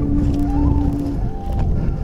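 Background music: a flute holds one long low note, then plays a few higher notes that slide in pitch. A low rumble runs underneath.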